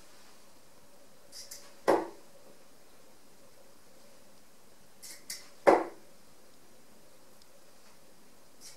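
Two Harrows Elite 23 g tungsten steel-tip darts hitting a bristle dartboard, one about two seconds in and one just before six seconds, each a single sharp thud with a faint tick just before it.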